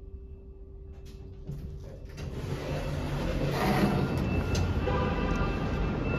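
A faint steady hum inside a hydraulic elevator car. About two seconds in, the car's doors slide open onto the parking garage, and a low rumble, like a vehicle moving in the garage, grows steadily louder.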